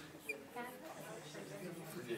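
Faint, low voices of students talking quietly in a classroom, with a brief high squeak about a third of a second in.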